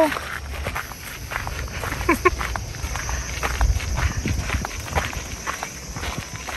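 Footsteps of two people crunching along a gravel path, over a faint steady high-pitched hum.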